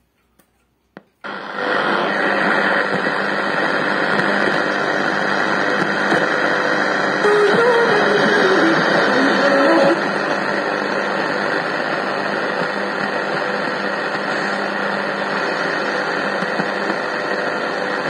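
Sony ICF-6500W multi-band radio switched on about a second in, then its speaker giving steady, loud static while it is tuned across the shortwave band. A faint wavering whistle rises through the hiss for a few seconds near the middle.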